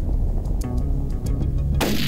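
Steady wind rumble on the microphone, then a single rifle shot near the end: a sharp crack with a tail that rings on.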